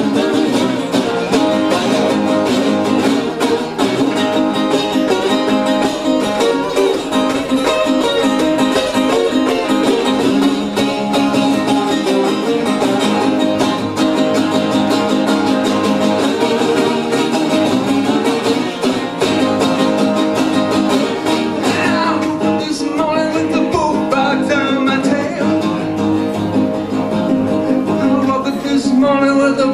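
Acoustic guitar strummed continuously in a steady rhythm as a live solo song accompaniment; a man's singing voice comes in over it about three-quarters of the way through.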